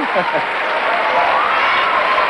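Studio audience applauding steadily, with a few voices calling out over the clapping; a man's voice trails off at the very start.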